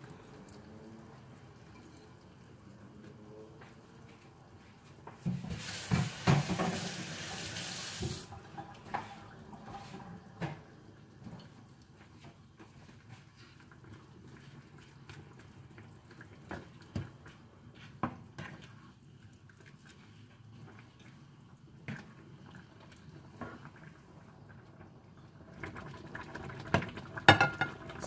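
A kitchen tap runs in a rush of water for about three seconds, then scattered light knocks of a spatula stirring thin noodles in a pan of simmering broth.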